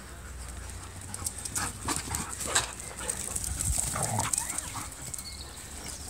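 Dogs at play on grass, with a string of short, irregular dog sounds from about one to four and a half seconds in.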